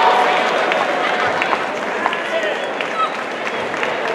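Crowd noise in a sports hall, with spectators and corners shouting during a kickboxing bout. A few sharp smacks, about a second apart, stand out, like blows landing.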